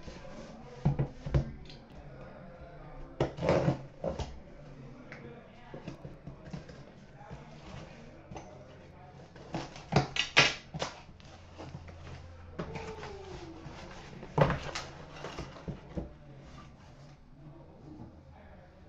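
A cardboard shipping case of trading-card boxes being opened by hand: scattered knocks and scrapes of cardboard, with the loudest burst of tearing and rustling about ten seconds in as the flaps are pulled open, and further knocks as the inner boxes are lifted out.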